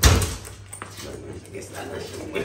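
A fabric backpack thumps down onto a kitchen counter, loudest at the start, followed by softer rustling and knocking as it is handled, and a man's short vocal sound near the end.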